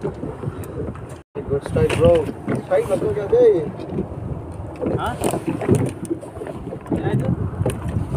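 Men's voices speaking in short bursts over a steady low rumble of wind on the microphone, with a brief cut to silence about a second in.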